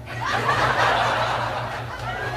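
A burst of breathy laughter that starts suddenly just after the beginning and goes on without a break, over a steady low hum.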